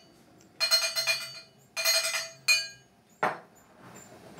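A chiming alert sound effect, the cue for a Super Chat donation on a live stream: three bursts of bright, glassy bell-like ringing about a second apart, each sounding the same set of steady tones, then a short sharp sound near the end.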